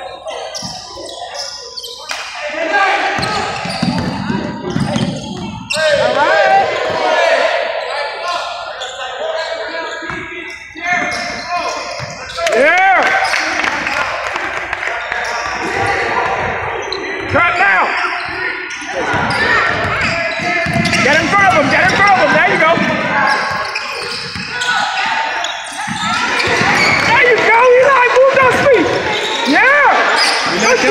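Youth basketball game on a hardwood gym floor: the ball bouncing, short sneaker squeaks, and indistinct calls from players and spectators, all echoing in the large hall.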